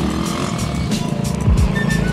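Background music with a deep, downward-sliding bass about one and a half seconds in, over a motorcycle engine running as the bike moves off.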